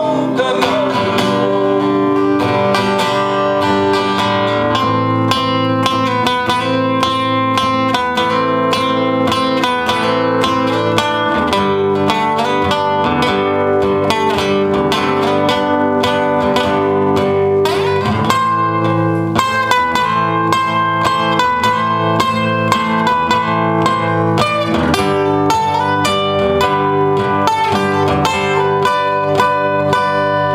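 Two acoustic guitars playing an instrumental passage of a song, chords strummed in a steady rhythm with sustained ringing notes over them.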